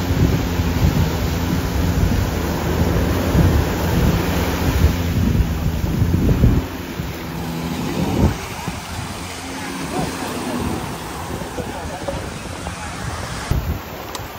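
Small waves washing up the sand, with wind buffeting the microphone. A steady low hum is there for about the first half, cutting off about six and a half seconds in.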